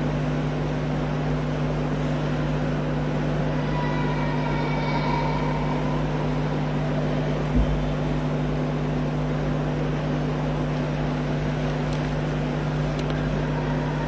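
Steady electrical hum and hiss from the hall's microphone and sound system, held at two low pitches, with a single low thump about halfway through.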